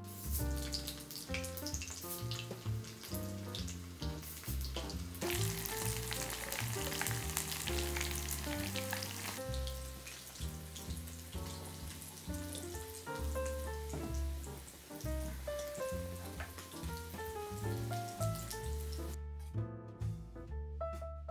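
Small floured fish sizzling as they deep-fry in oil in a small cast-iron skillet. The sizzle is loudest from about five to nine seconds in and stops just before the end, over background piano music.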